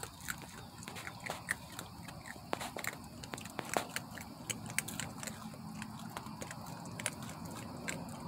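Young raccoons chewing dry food pellets: a quick, irregular run of sharp crunches and clicks.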